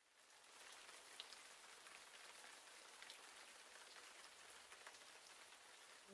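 Faint, steady rain falling, with a few separate drops ticking now and then. It fades in over the first half-second.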